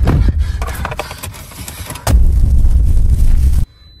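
Loud, deep rumble with a flurry of clicks and crackling in the first two seconds, then a second heavy rumble about two seconds in that cuts off abruptly shortly before the end.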